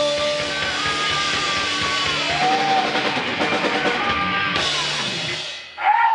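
Live rock band (electric guitar, bass and drum kit) playing the last bars of a song, held chords ringing over the drums until the music drops away about five and a half seconds in. A loud shout comes right at the end.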